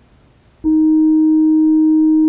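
Loud steady test tone, a single held pitch of the kind that goes with a colour-bars test card. It starts suddenly about half a second in, after near silence.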